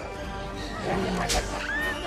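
Dramatic orchestral film score, with a short rush of noise about a second in and a brief animal cry near the end.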